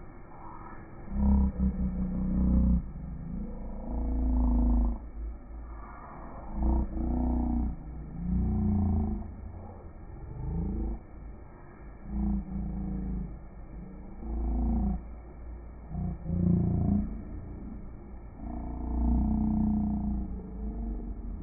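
A deep, muffled voice-like sound in about a dozen short bursts, its pitch bending up and down. The sound is cut off above the low range, as if heard through a phone or a heavy filter.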